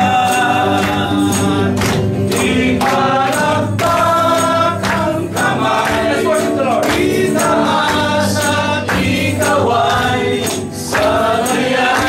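Gospel song sung by a congregation led by male voices, with electric guitar accompaniment and a steady percussive beat.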